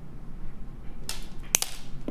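A strand of stone beads being handled: a short swish, then a sharp click and a smaller second click about a second and a half in as the beads knock together.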